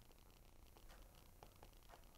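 Near silence: room tone with a few faint ticks of a stylus tapping and writing on a tablet screen.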